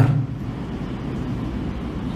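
Steady low background hum of a room heard through a microphone, with no distinct events. The last syllable of a man's speech trails off at the very start.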